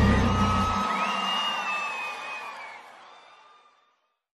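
A live sofrência band's closing chord ringing out and fading away to silence at the end of a song, with a thin high held note gliding over it from about a second in.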